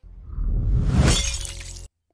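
Glass bottle smashing in the show's soundtrack: a crash that swells to its peak about a second in and cuts off suddenly just before the end, with music underneath.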